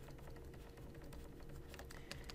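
Faint light clicks and taps of a stylus writing on a tablet, over a faint steady hum.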